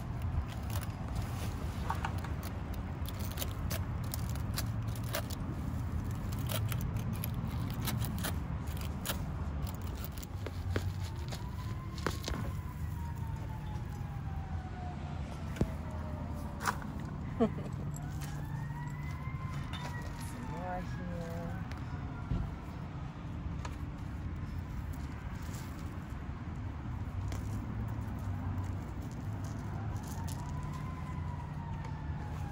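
Hand trowel scraping and clicking through crushed lava rock and soil while Bermuda grass is dug out by the roots, with sharp clicks most frequent in the first part. Through the middle, a distant siren wails, rising and then slowly falling twice.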